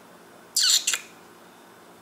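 A short, high whistle through pursed lips, sliding down in pitch, about half a second in.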